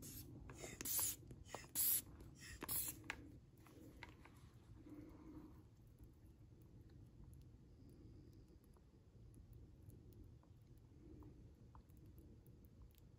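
Inflatable air wedge being handled and squeezed in a bowl of water to find a pinhole leak. Three short swishing noises come in the first three seconds, then only faint handling and a low hum.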